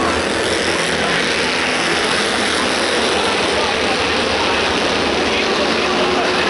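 Several small stock race cars' engines running hard as the pack laps an asphalt oval, heard from trackside as a steady, dense din with no letup.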